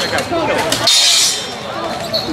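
Steel swords clashing and striking plate armour in a full-contact fight: a few sharp metallic clanks, with a louder, hissier clash about a second in.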